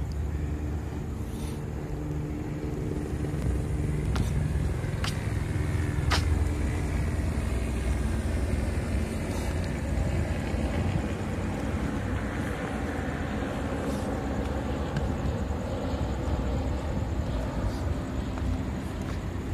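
Street traffic at night: a vehicle engine humming steadily for the first several seconds, then the hiss of a car passing. Three sharp clicks about a second apart come a few seconds in, likely footsteps on pavement.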